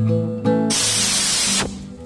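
Acoustic guitar music with chords ringing; about two-thirds of a second in, a loud hiss like a spray cuts across it for about a second and stops abruptly, leaving the guitar quieter.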